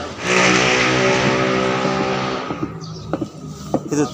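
A motor vehicle passing close by on the street: its engine swells in suddenly, then fades away over about two and a half seconds. A few sharp clicks follow near the end.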